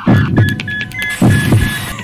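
Sound-effect track: low double thumps in pairs, like a heartbeat, recurring about once a second, under a fast, high-pitched beeping about four times a second.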